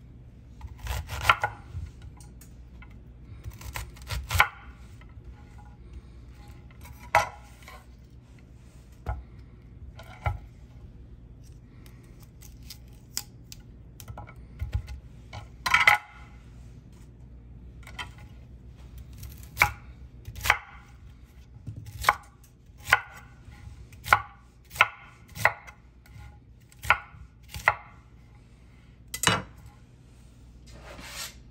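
Chef's knife cutting a head of cauliflower on a wooden cutting board: a series of sharp knocks as the blade meets the board. They come sparsely at first, then about once a second in the second half.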